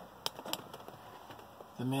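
Quiet background with a few faint, sharp clicks in the first second, then a man's voice starts near the end.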